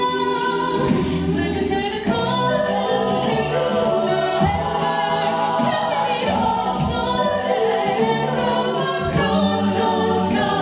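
A cappella group singing: a female solo voice over the mixed group's layered vocal harmonies, continuous throughout.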